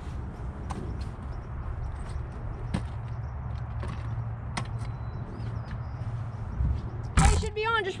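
Scattered light knocks and clicks of people moving about and handling gear on a wooden dock, over a steady low outdoor rumble. A louder thump comes about seven seconds in, followed by a man's voice.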